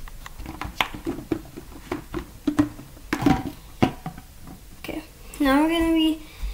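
A scatter of short clicks and rustles from hands handling things close to the microphone, then a drawn-out voice sound with a gliding pitch near the end.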